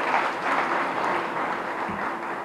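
Audience in a hall applauding steadily, the clapping thinning out near the end.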